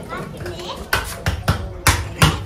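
A block of ice being struck and chipped with a pointed metal hand tool: about four sharp strikes in the second half, with a small child's voice alongside.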